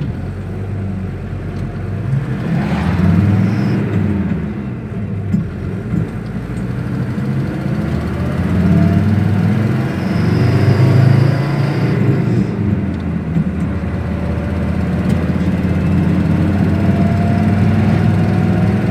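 Engine and road noise of a moving road vehicle heard from inside the cabin: a steady low rumble that swells and eases, with a faint rising whine near the end as it speeds up.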